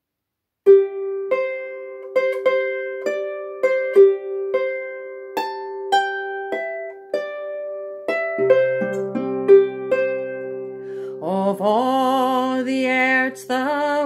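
Clarsach (Scottish lever harp) plucked solo: a slow melody of single notes over a ringing repeated middle note, with lower bass notes joining past the middle. Near the end a woman's voice comes in, singing with vibrato over the harp.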